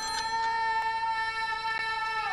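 A man screaming: one long cry held at a steady pitch.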